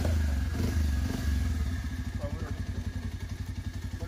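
Bajaj Pulsar motorcycle's single-cylinder engine idling with an even, rapid low pulse, easing slightly in level.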